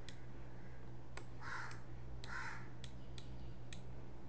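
Computer mouse clicking now and then over a steady low electrical hum, with two short harsh sounds about a second apart near the middle.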